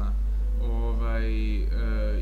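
A man's voice holding one long drawn-out hesitation vowel, a sustained 'eee' between words, starting about half a second in, its pitch wavering slightly, over a steady low hum.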